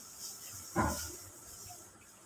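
Quiet room hiss, broken about a second in by one brief throat sound close to the microphone.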